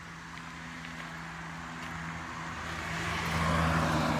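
A motor vehicle, growing steadily louder to its loudest near the end, over a steady low hum.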